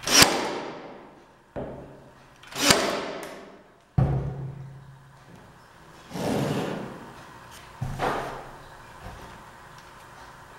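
Cordless 23-gauge pin nailer firing pins into laminate stair nosing: a series of sharp shots, each trailing off over about a second.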